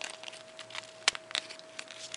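Folded origami paper rustling and crackling as its flaps are pressed and tucked in by hand, with a few short crackles, the sharpest about a second in, over a faint steady hum.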